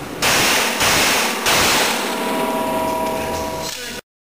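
Three handgun shots, the second and third following at about half-second intervals, each with a long echo off concrete walls.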